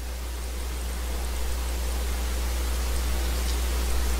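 Steady hiss with a low electrical hum from the microphone and sound system, no speech.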